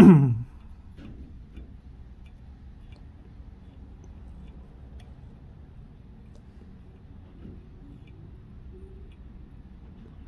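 A brief throat-clear right at the start, then quiet fly tying: a low steady hum with a few faint, scattered ticks as a bobbin wraps thread around a hook held in a fly-tying vise.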